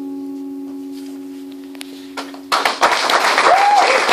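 The final acoustic guitar chord rings out and slowly fades, then audience applause breaks out suddenly about two and a half seconds in, with a brief shout from someone in the crowd.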